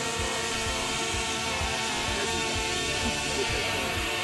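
Multirotor camera drone in flight, its propellers giving a steady, even-pitched whine.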